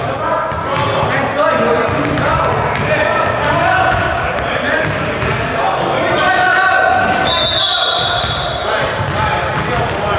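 Indistinct voices of basketball players calling out, echoing in a gym hall, with a basketball bouncing on the wooden court floor.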